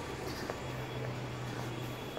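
Steady low mechanical hum, with a few faint footsteps or clicks.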